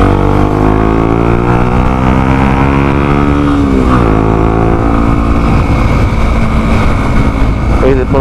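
Motorcycle engine pulling under acceleration, its pitch climbing steadily for almost four seconds, then dropping sharply at a gear change and holding steady after, over a low wind rumble on the microphone.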